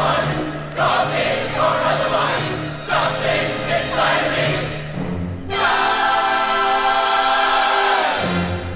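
Broadway-style chorus singing with orchestra: short, punched sung phrases, then a long held final chord from about five and a half seconds in that cuts off near the end, followed by a brief low note from the band.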